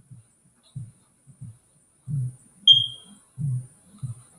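Low heartbeat sound effect: double thumps about every second and a third, growing louder. A single short, high beep sounds a little after the middle.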